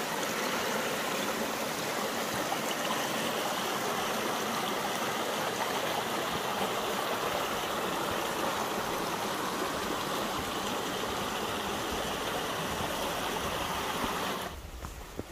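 Rocky mountain stream flowing steadily over rocks and small cascades, running full after rain.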